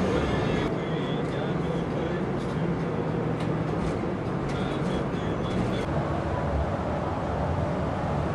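Tour coach driving on a highway, heard from inside the cabin: a steady low engine and road rumble.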